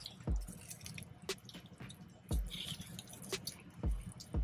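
Close-up wet chewing and mouth smacking from someone eating a bite of cheeseburger. Three soft low thumps come at intervals of about a second and a half, with a few small clicks between them.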